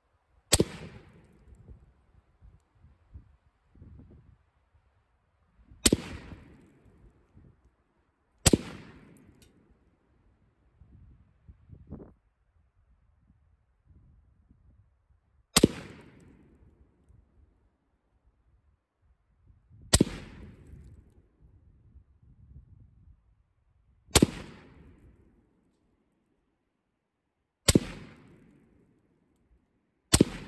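WBP Jack, a Polish AK-pattern rifle in 7.62×39, firing slow aimed single shots, seven in all, spaced a few seconds apart at irregular intervals. Each shot is a sharp crack followed by a short echo.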